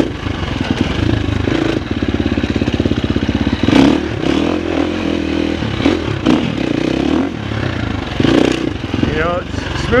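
Husqvarna FX350 dirt bike's 350 cc single-cylinder four-stroke engine running as it is ridden, the revs rising and falling with the throttle.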